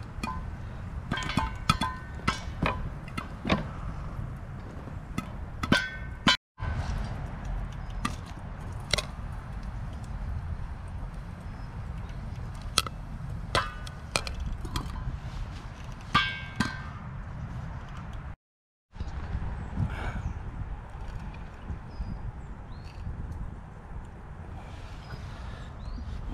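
Popcorn popping in a frying pan covered with a stainless steel bowl as the pan is shaken over a fire: a run of sharp pops and ticks against the metal, with clinks and short rings from the bowl and pan. The sound drops out briefly twice.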